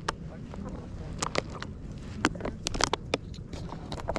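Steady low rumble of wind and movement on a slow horseback ride over sand, with scattered sharp clicks and crackles from the rider's handling of gear.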